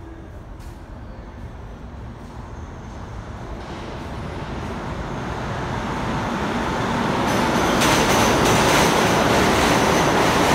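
Subway train approaching and running through the station, a steel-wheel rumble on the rails growing steadily louder, with a hiss of high noise joining about seven seconds in and staying loud to the end.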